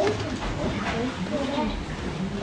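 Low, indistinct talking and murmuring voices, without any clear words.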